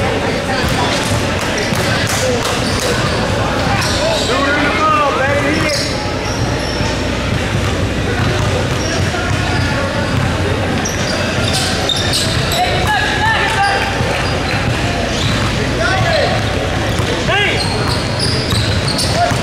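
Basketball game sound in a large gym: a ball bouncing on the hardwood floor again and again, with players' and onlookers' voices calling out in the echoing hall.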